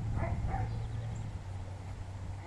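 A dog barking briefly, two short barks near the start, over a steady low hum.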